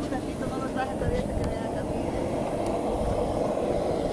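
Steady loud rumble with people talking faintly underneath.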